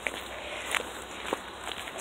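Footsteps: three soft steps about two-thirds of a second apart, over a steady hiss of wind on a phone's microphone.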